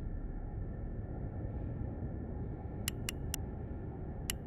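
A low, steady rumble, with three quick, sharp clicks close together near the end.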